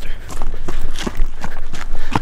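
Quick, irregular footsteps and scuffs on rock as someone hurries and scrambles up a trail, with knocks from the jostled handheld camera.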